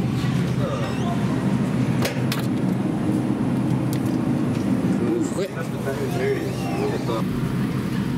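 Busy supermarket ambience: indistinct background voices over a steady low hum, with a couple of sharp clicks about two seconds in.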